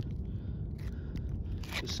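Plastic spatula scraping and spreading thick roofing sealant over gritty asphalt shingles, a few short scratchy strokes over a steady low rumble. A word of speech comes in near the end.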